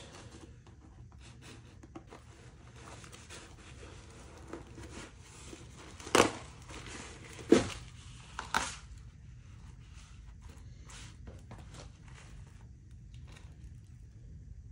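Fabric rustling and tearing as the double-sewn black cover of a homemade Kevlar and UHMWPE armor panel is cut open and the layered ballistic stack is pulled out of it. There is a steady scrape and crinkle of handled fabric with small clicks, and three louder sharp sounds about six, seven and a half, and eight and a half seconds in, the middle one the loudest.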